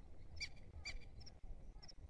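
Southern lapwings (quero-quero) calling in the distance: two short, shrill calls about half a second apart, over faint high chirps and a low rumble.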